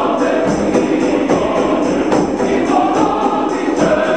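Men's choir singing, accompanied by hand drums and a rattling percussion instrument that keeps a steady beat of about three strokes a second.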